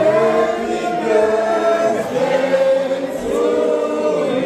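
A group of people singing together in unison, holding long notes, as a celebration song for the cake.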